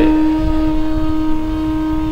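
Accompanying instrumental music holding one steady, unchanging note in a pause of the sermon.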